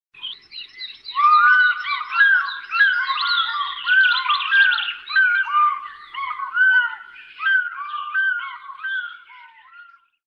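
A dense chorus of many birds chirping and whistling at once: short arched notes repeat and overlap continuously, busiest in the first half and thinning toward the end.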